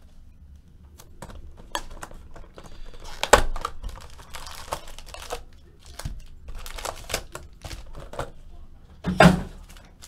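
Clear plastic shrink-wrap being torn and crumpled off a trading-card box: irregular crinkling and crackling with small clicks. The two loudest crinkles come about three seconds in and about a second before the end.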